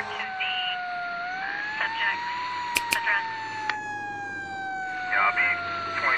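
A siren wailing, its pitch sliding slowly up and then slowly down. A voice is heard briefly in the middle and again near the end, and there are two quick clicks about three seconds in.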